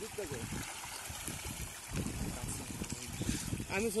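Farmed pangasius catfish splashing and churning the pond surface in a feeding frenzy as feed pellets are thrown in, an irregular rush of many small splashes.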